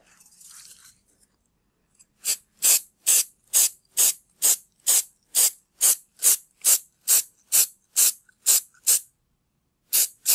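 Aerosol can of clear edible lacquer being shaken, its mixing ball rattling in a steady rhythm of about two clacks a second.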